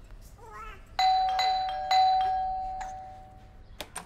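Doorbell chime ringing twice, about a second apart, each ring sounding clear steady tones that fade away over the next two seconds.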